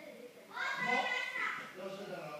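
A child's voice calling out loudly for about a second, starting about half a second in, among other children's voices.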